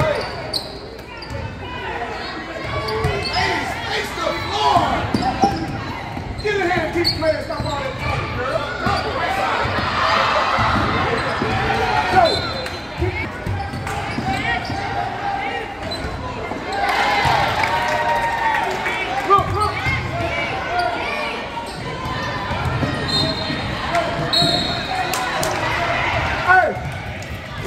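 A basketball bouncing on a gym's hardwood court during play, with voices of players and spectators calling out through the hall.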